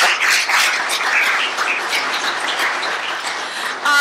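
Congregation applauding, a dense steady clapping with a little laughter near the start, easing off slightly toward the end.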